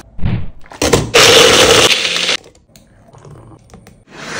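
Electric blender running for about a second, loud and then cut off suddenly, after a low thump and a couple of sharp knocks.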